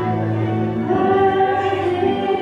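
Two women singing a duet through microphones, holding long notes, with a change of note about a second in.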